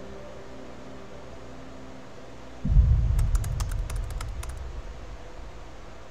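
A deep low rumbling boom that comes in suddenly about two and a half seconds in and slowly dies away over the next three seconds, a transition effect leading into a new title card. A quick run of light clicks, like keyboard taps, sounds over the start of the boom.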